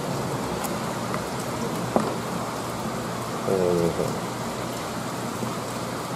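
Steady, even rain-like hiss, with a single sharp click about two seconds in and a short voiced hum in the middle.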